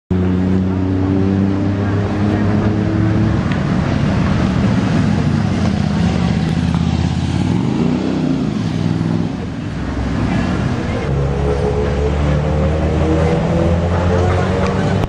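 Street traffic of small engines running, with a motorbike passing close about halfway through and an engine rising in pitch as it revs up near the end.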